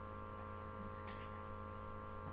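Steady low electrical hum, a mains-type buzz in the recording, with no other clear sound.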